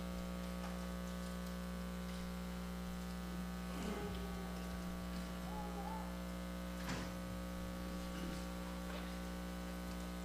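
Steady electrical mains hum with a few faint, brief knocks about four and seven seconds in.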